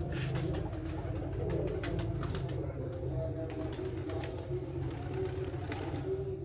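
Domestic pigeons cooing steadily in a loft.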